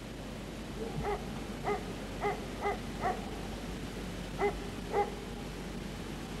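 A dog barking: seven short, high yaps, five in a quick run and then two more that are the loudest, over a steady background hiss.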